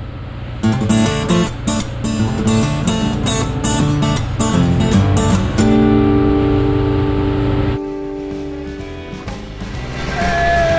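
Guitar music: quick plucked and strummed acoustic guitar notes over a low steady drone, settling into a held chord about halfway through and dropping quieter near eight seconds.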